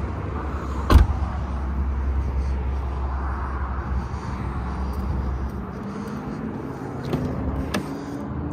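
A Porsche 718 Cayman door shutting with a single sharp thump about a second in, then a lighter latch click near the end as the next car's door is opened, over a steady low rumble.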